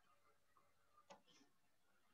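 Near silence: room tone with one faint click about a second in.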